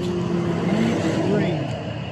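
A pickup truck driving past on the street, its engine and tyre noise swelling and fading around the middle, under a person's voice.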